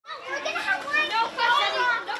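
Many children's voices chattering and calling out at once, cutting in suddenly from silence.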